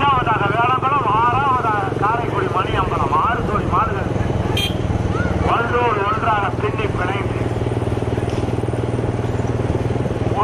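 A motor vehicle engine running steadily beneath men's repeated shouting and whooping in quick bursts, urging on racing bullock carts. There is a short sharp click about halfway through.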